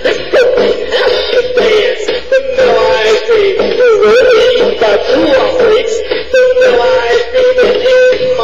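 Music: a man's sung melody, held and wavering in pitch, without clear words, over a steady beat.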